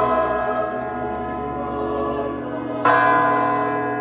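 Large church tower bells of Hallgrímskirkja ringing: one stroke rings on from just before, and a fresh stroke comes about three seconds in, each with a long, slowly fading hum.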